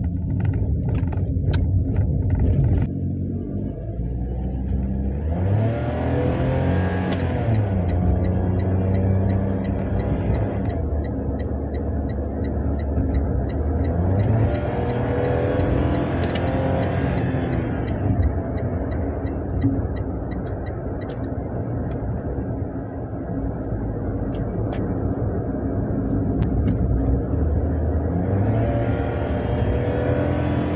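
Toyota hatchback's engine and road noise heard from inside the cabin while driving, the engine note climbing in pitch three times as the car accelerates: about five seconds in, midway, and near the end.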